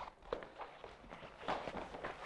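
Hurried footsteps on a wooden floor, a quick irregular run of knocks.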